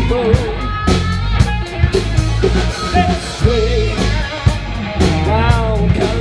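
A live rock band playing: electric guitars, bass and a drum kit, with a singer's voice carrying the melody over them.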